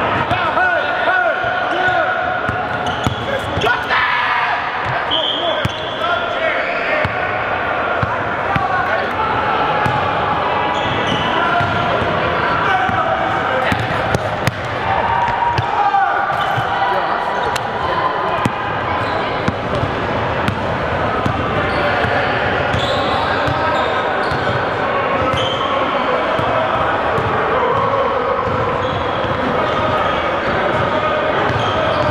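Basketball being dribbled and bouncing on a hardwood gym floor, with short high sneaker squeaks and players calling out and talking throughout.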